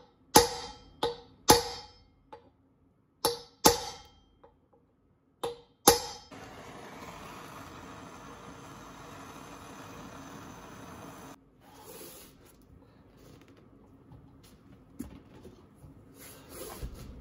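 Seven sharp metal blows with a short ring, in pairs and singles over the first six seconds, on a brass drift set on a steel brake-rotor bolt head to shock its threads loose. Then a handheld gas torch hisses steadily for about five seconds as it heats the bolt where it sits in the aluminium wheel, to free threadlocker or galvanic corrosion.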